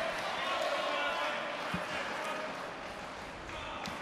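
Murmur of many voices and general noise filling a large sports hall, with one faint knock a little before halfway.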